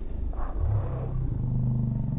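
A motor vehicle's engine running and accelerating, its low hum stepping up in pitch twice.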